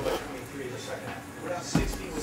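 Shrink-wrapped cardboard hobby boxes being handled and stacked on a table: light rustling and small knocks, with a thump near the end as a box is set down.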